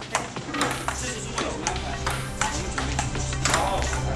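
Ping-pong ball clicking off paddles and table in a rally, about two to three hits a second, over background music.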